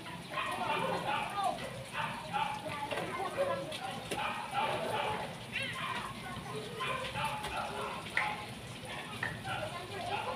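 Indistinct background voices talking throughout, over a faint sizzle of butter foaming in a hot wok.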